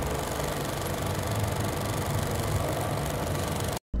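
Old film projector sound effect: a steady whirring hiss with a low hum underneath, cutting off suddenly just before the end.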